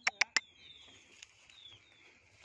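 Faint, short high-pitched calls that slide downward, repeated several times, from a flock of sunbirds. Three sharp clicks at the very start are the loudest sounds.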